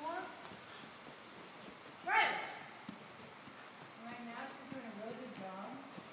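Hooves of a Percheron draft horse trotting on an arena's dirt floor, with low voices talking. About two seconds in, a brief, loud, high-pitched cry falls in pitch.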